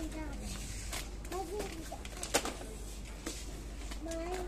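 A young child's brief wordless vocal sound about one and a half seconds in, with a few light clicks, the sharpest a little past the middle, over a steady low background hum.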